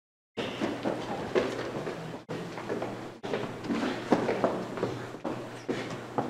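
Room noise in a church sanctuary: scattered small knocks and shuffling over a steady low hum. The sound cuts in abruptly just after the start and drops out briefly a few times.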